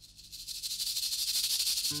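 A high rattling hiss that swells up and peaks about a second and a half in, as a soundtrack intro effect. Acoustic guitar music comes in just before the end.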